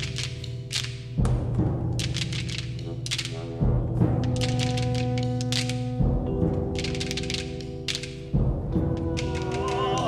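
Stones knocked together by hand in quick clicking bursts, imitating a gun magazine being loaded and machine-gun fire. Beneath them runs a low held orchestral drone, with a deep drum stroke about every two and a half seconds.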